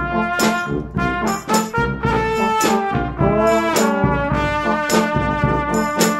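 Instrumental brass music: trombone and trumpet play held and moving notes over a low bass line, with sharp drum and cymbal hits punctuating it.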